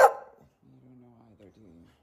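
A bull terrier barks once at the very start. About half a second later comes more than a second of faint, low, wavering grumbling.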